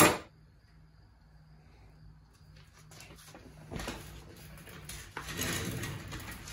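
Small steel engine parts being handled as the timing sprocket and spacer shims are worked off the crankshaft nose. A sharp knock right at the start, then faint metallic clinks and scrapes that grow louder toward the end.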